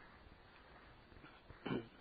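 Quiet room tone, broken once near the end by a brief, short sound of about a fifth of a second.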